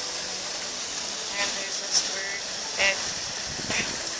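Outdoor background of a steady hiss, with brief snatches of people's voices about a second and a half in, near the middle and near the end.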